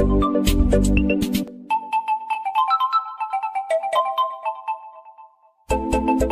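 Background music with a steady beat; the beat and bass drop out about a second and a half in, leaving a lighter melody of short, bell-like notes that fades almost away. The full music with its beat comes back near the end.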